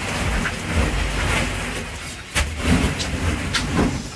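Plastic ball-pit balls rustling and clattering continuously as a child burrows and rummages through a deep pit of them, with a few sharper knocks and dull thumps of his body moving among them.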